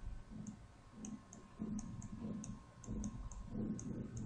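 Faint, irregular light clicks, about three a second, with soft low taps, from handwriting being entered on a computer drawing screen with a pen or mouse.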